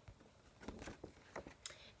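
Very quiet handling of a laminated paper chart: a few soft, scattered rustles and clicks in the second half.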